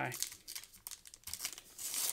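Wrapper of a 2019 Topps Heritage High Number baseball card pack being torn open by hand: a run of crinkles and rips, the loudest tear near the end.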